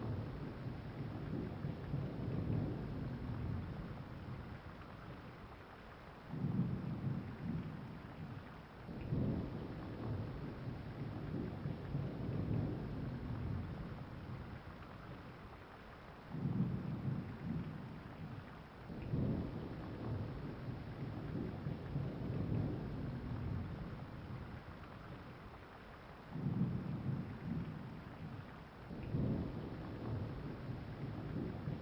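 Steady rain with low rumbles of thunder that swell in pairs roughly every ten seconds.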